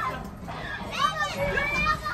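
Children's high-pitched voices calling out in short wordless exclamations, over a steady low rumble from the ride's sound effects.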